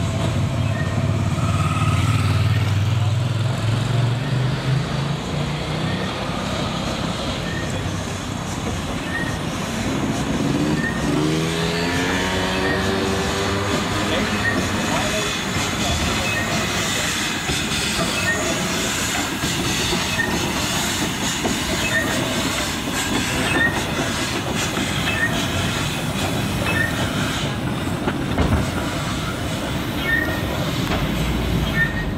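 Rack-railway train on the Monte Generoso line running on the rack, with a rising pitched whine near the start and again about ten seconds in, and a faint regular click about once a second.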